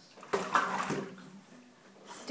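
A burst of water splashing and scrabbling from a wet small dog in a sink bath, lasting under a second near the start.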